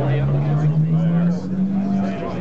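Bedini BFW machine's rotor running over its wire coil: a steady hum that rises slowly in pitch as it speeds up.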